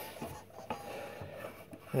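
Faint rubbing with a few light clicks from a homemade grip exerciser being worked by hand: three-quarter-inch iron pipe handles wrapped in grip tape, sprung by a garage door spring.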